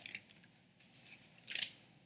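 Quiet pause with a few faint clicks at the start and one brief paper rustle about one and a half seconds in, as a Bible page is handled at a lectern.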